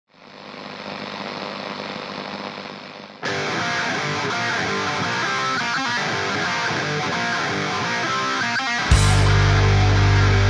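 Rock song intro: a muffled swell for about three seconds, then a distorted electric guitar comes in suddenly, and near the end the bass and drums crash in much louder.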